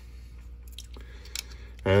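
A few faint metallic clicks from the lockwork of a Belgian Bulldog .320 revolver, worked by hand with its cylinder out, the loudest about a second and a half in. The trigger is being pulled, and its return spring pops out of place instead of pushing the trigger forward again.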